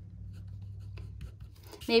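A pen writing on a sheet of paper on a hard desk: faint, short scratching strokes as a word is written, over a low steady hum.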